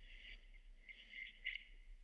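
Near silence: faint room tone in a pause between spoken lines.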